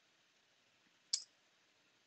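A single sharp computer click about a second in.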